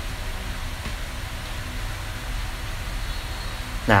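Steady low-pitched background hum of room noise, with no distinct sound events.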